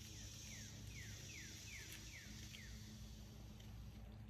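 A bird singing a series of about seven short whistled notes, each falling in pitch, evenly spaced over the first two and a half seconds, faint over a steady high hiss.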